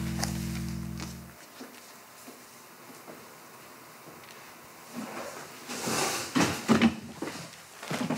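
A held low music chord that stops about a second and a half in. After a quiet stretch, a cluster of short knocks and rustles near the end, like someone moving at a wooden school desk.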